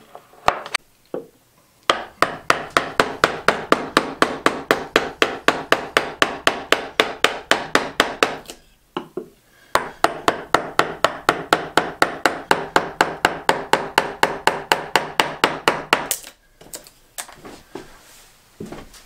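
Mallet rapidly tapping a carving gouge into a wooden block, hollowing out a small carved boat hull: about four to five sharp wooden knocks a second in two long runs with a brief pause in between, preceded by a few separate knocks.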